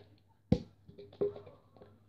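A sharp knock about half a second in and a softer knock a little after a second, with a few faint taps: a marker being handled and knocked down on the floor.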